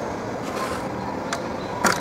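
Three light clicks of cookies being set into a clear plastic clamshell container, the last one the loudest, over a steady background hiss.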